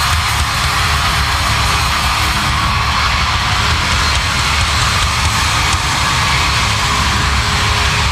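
Pop-punk band playing live: a drum kit and distorted electric guitars at a steady, loud level.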